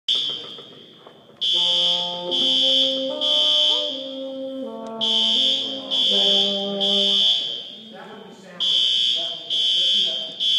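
Building fire alarm sounding the temporal-three evacuation signal: three high beeps, a pause, then three more, repeating. Under it a bassoon plays a slow melody of held notes.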